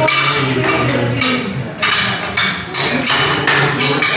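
Metal spatulas chopping and tapping on an ice cream cold plate while fruit ice cream is being mixed, a few sharp strikes a second in an uneven rhythm.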